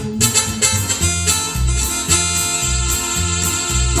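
Ranchera instrumental passage on electric bass guitar and keyboard, without singing: the bass keeps a steady beat of about two notes a second under the keyboard's sustained chords.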